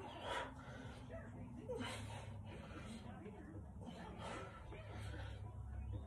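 A man breathing hard with exertion, a sharp, hissy exhale about every two seconds in time with each overhead press against resistance bands, over a steady low hum.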